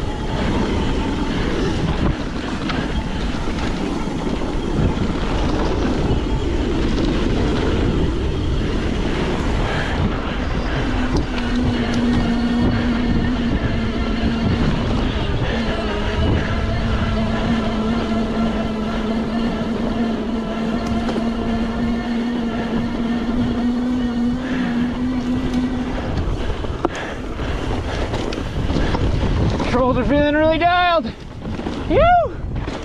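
Bike tyres rolling over a dirt trail, with wind buffeting the helmet-camera microphone. About a third of the way in, a steady electric-motor whine from the Bimotal 750 W throttle drive comes in as the bike climbs under power, and it holds until near the end.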